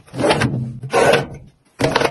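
Objects sliding and rubbing inside a steel drawer as it is sorted: two scraping sweeps of about half a second each, then sharp clicks near the end as a plastic organiser tray is set into the drawer.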